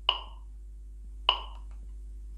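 Small electronic metronome ticking at 50 beats per minute: two short, pitched beeps about 1.2 seconds apart, marking the quarter-note pulse.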